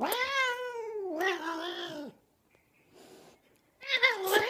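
A cat meowing: one long, drawn-out meow of about two seconds that wavers and falls in pitch.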